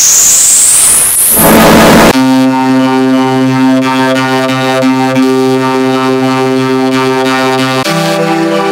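Loud, harshly distorted electronic audio. About two seconds of hiss with a high whistle rising in pitch then cuts suddenly to a steady, droning held chord of many tones, which shifts to a different chord right at the end.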